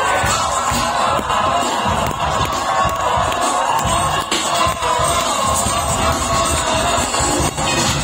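Large concert crowd cheering and shouting over loud amplified music from the stage sound system.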